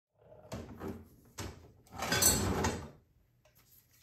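Three short knocks, then a louder scraping, rattling clatter lasting about a second, starting about two seconds in.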